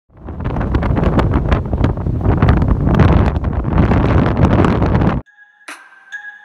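Strong gusty wind buffeting the microphone, a loud low rumble with constant sharp blasts, which cuts off suddenly about five seconds in. A few notes of music begin just before the end.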